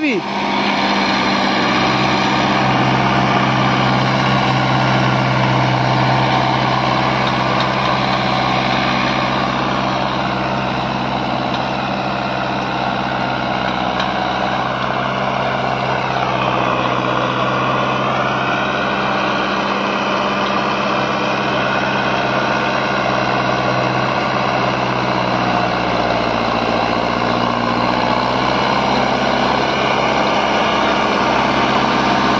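Mahindra Arjun Novo 605 tractor's diesel engine running steadily under heavy load as it drags a 9×9 disc harrow slowly in a low gear, with a short dip in pitch a little past halfway.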